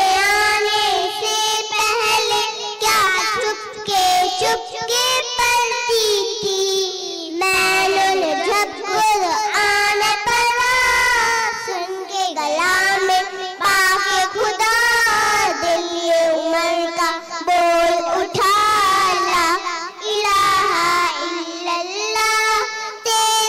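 Two young girls singing a naat, a devotional song in praise of the Prophet, together into microphones: a high melody of long held notes with a slight waver, broken by short breaths between phrases.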